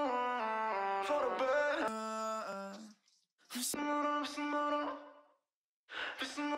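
A soloed sung vocal harmony track played back through a Soundtoys Effect Rack chain of filter, distortion and echo, with no beat behind it. It runs in two phrases of stepping, sliding notes with a short gap about three seconds in, and stops shortly before the end.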